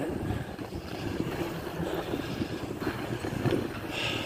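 Wind buffeting a phone microphone, mixed with the low rumble of inline skate wheels rolling over wet pavement.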